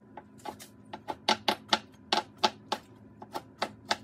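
A kitchen knife slicing wood ear mushroom into thin strips on a bamboo cutting board: a quick, even run of sharp taps of the blade on the board, about four a second.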